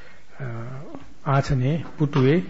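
A man's voice speaking slowly in short phrases, with brief pauses between them: a monk delivering a sermon.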